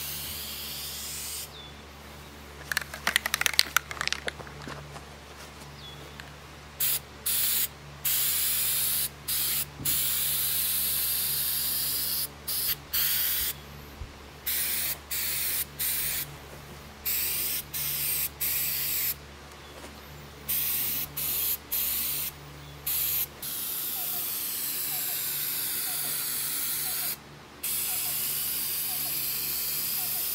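Aerosol spray can of sealant hissing in many short bursts, then a longer steady spray near the end, as it is sprayed over the rivets and seams of a leaking aluminum boat hull. A short rattle sounds about three seconds in, before the spraying starts.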